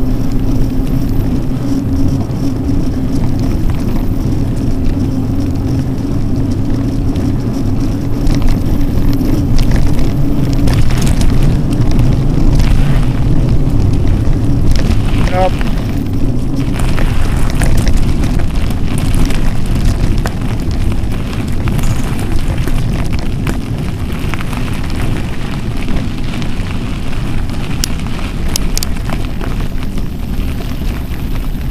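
Wind rumbling on the microphone together with mountain-bike tyres rolling over cracked pavement and gravel on a climb; a steady low hum runs through the first third.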